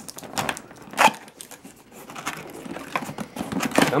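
Cardboard laptop box being worked open by hand: scrapes, rustles and a few short knocks as the carry-handle tab and lid flap are pulled free. The loudest knock comes about a second in.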